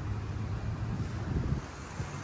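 Wind on the microphone over a low, steady outdoor rumble, with no distinct event standing out.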